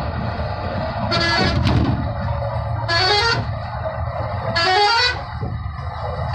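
Vehicle running over a bridge with a steady rumble. A horn sounds in short half-second blasts about every one and a half to two seconds, four times.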